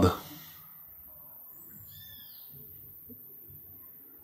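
Quiet room with a faint, high chirping call, bird-like, about one and a half seconds in.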